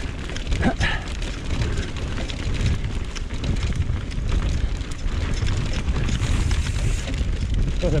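Mountain bike descending fast on a hardpacked dirt trail: wind rushing over the camera's microphone and tyre rumble, with steady rattling and clicking from the bike over the bumps.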